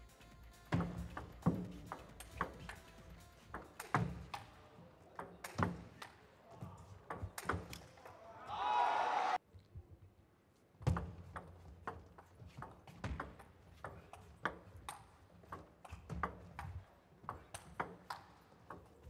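Table tennis ball being hit back and forth in rallies, sharp clicks off the bats and table in quick, irregular runs. A voice calls out loudly for about a second near the middle, then the clicking stops briefly and a new rally starts.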